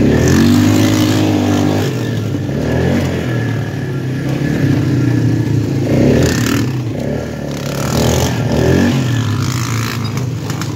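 ATV engine running under throttle while being ridden, revving up in the first couple of seconds and then rising and easing off a few more times.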